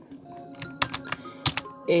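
About five quick computer keyboard key clicks, bunched around the middle, over soft background music.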